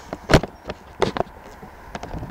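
A few short, sharp knocks: the loudest about a third of a second in, then two lighter ones around the one-second mark, over a low background hiss.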